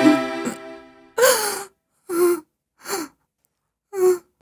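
Film background music fades out in the first second. Then a person makes four short, breathy vocal sounds with a falling pitch, under a second apart, with silence between them.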